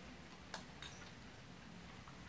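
Eating utensils clinking lightly against bowls: two sharp clicks about a third of a second apart, the second with a brief ring, over a faint steady hum.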